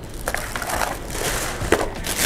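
Clear plastic wrapping crinkling and rustling as a wrapped frying pan is handled and lifted out of its cardboard packing insert, with a sharp tap near the end.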